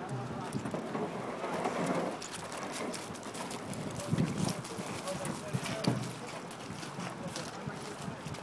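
Indistinct voices of people talking at the water's edge, with scattered short knocks and crunches as an aluminum canoe is pushed off the gravel bank into the river.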